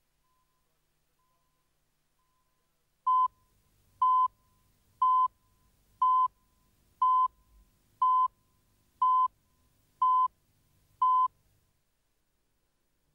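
Countdown beeps of a video tape leader: nine short, identical beeps at one steady pitch, one each second, starting about three seconds in and marking the numbers of the countdown.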